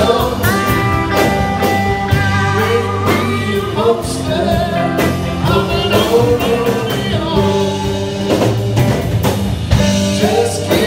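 Live band playing a blues-rock song on several electric guitars, with a man singing lead.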